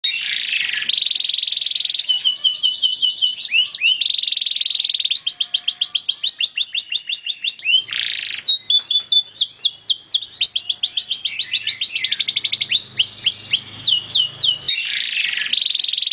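Male domestic canary singing a continuous song of fast rolling trills and rapid runs of repeated notes, switching to a new phrase every second or two. It is the song of a male ready to mate.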